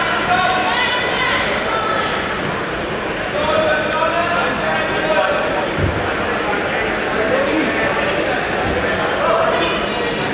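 Indistinct overlapping voices calling out, echoing in a large sports hall, with a dull thump just before six seconds in.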